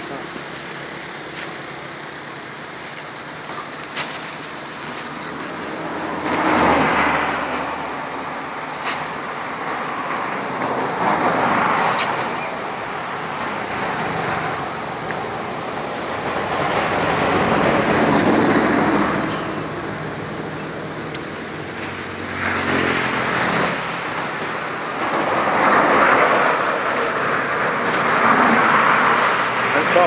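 Road traffic passing by, swelling and fading every few seconds as vehicles go past, with a few short clicks and rustles of plastic bags being handled.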